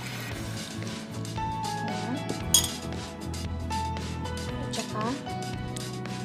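Metal kitchen utensils clinking and knocking against a glass mixing bowl and jar, in scattered short clinks with one sharp, louder clink about two and a half seconds in, over background music.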